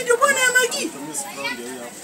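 Speech only: a loud, high-pitched voice in the first second, then quieter talk.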